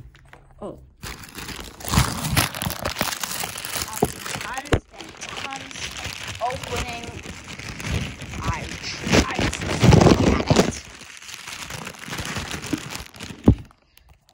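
Plastic shipping mailer bag being handled and pulled open by hand: continuous crinkling and rustling with small crackles, broken briefly about five seconds in, and a sharp snap near the end.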